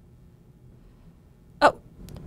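Quiet room tone, then a woman's short, sudden "oh" near the end.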